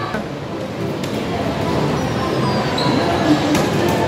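Indoor arcade ambience: a steady mix of game-machine sounds and faint music, with a couple of short clicks.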